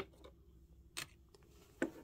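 A few faint clicks and taps from small plastic toy figures and a toy cup being handled and set down on a tabletop: one at the start, one about a second in, and one near the end.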